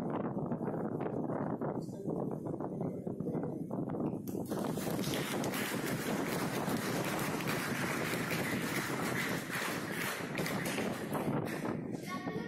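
Audience applauding, starting about four seconds in and dying away just before the end.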